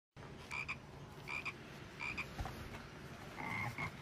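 Frog croaks from a cartoon frog animation: four double croaks, each two short calls close together, coming roughly every three-quarters of a second, the last one longer.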